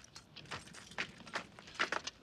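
A few soft, irregular footfalls and light clinks, a person in armour running over rough ground.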